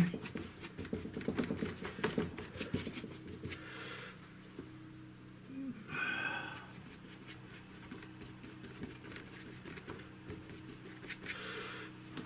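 Bristle brush scrubbing and dabbing oil paint onto a hard MDF panel: a rapid patter of short scratchy strokes through the first four seconds or so, then fewer and fainter strokes, over a steady low hum.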